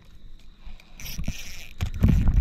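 Handling noise as a fishing rod is pulled out of a tube rod holder: rustling and a knock, with low rumbling on the microphone growing louder near the end.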